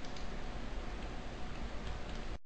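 Faint steady hiss with a low hum underneath: the recording's background noise, no distinct events.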